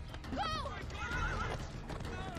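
A horse whinnying in high calls that rise and then waver, with hooves moving on the ground.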